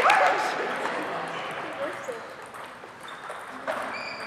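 Reverberant sports-hall ambience just after a table tennis rally ends: a brief squeak at the start while the echo dies away, then faint voices and a single ping-pong ball click from the other tables near the end.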